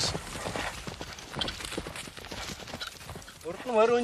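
A horse's hooves clip-clopping at a slow walk, in uneven steps. A man's voice comes in near the end.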